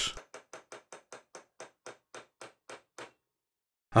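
A small hammer tapping a centre punch on a sheared-off steel bolt in a cast-iron crosshead guide: about a dozen light, evenly spaced taps, roughly four a second, stopping about three seconds in. The taps are making a deep centre pop in the middle of the broken bolt so that it can be drilled out.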